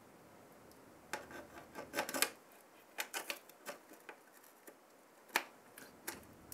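CPU cooler backplate and its mounting bolts being fitted against the back of a motherboard: a scatter of small clicks and taps, with a single sharper click near the end.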